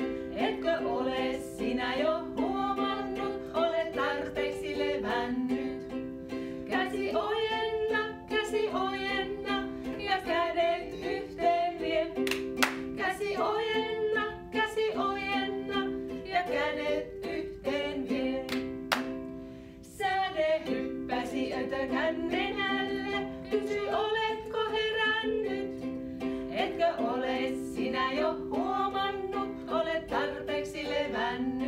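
Women's voices singing a children's action song together, accompanied by a strummed ukulele. There is a short break in the music about two-thirds of the way through.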